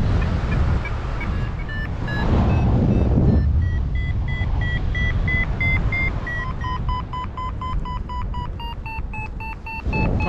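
Paragliding variometer beeping in short, regular electronic beeps that rise in pitch and come a little faster in the second half: the climb tone, the sign of the wing climbing in a thermal. Wind rumbles on the microphone underneath.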